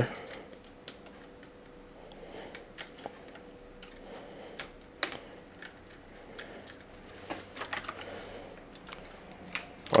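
Light, scattered clicks and taps of hard plastic as an Armarauders Bellerophon robot figure's posable fingers are set around its rifle's grip and trigger.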